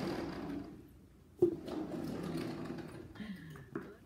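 Low, unclear voice sounds that come and go, with a sharp knock about one and a half seconds in and a smaller click near the end.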